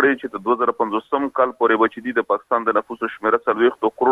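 Speech only: a man reporting news in Pashto over a telephone line, the voice narrow and thin.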